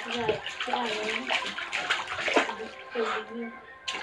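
Water splashing in a small inflatable pool as a toddler in a neck float kicks her legs, in repeated short splashes. Soft wordless voice sounds run underneath.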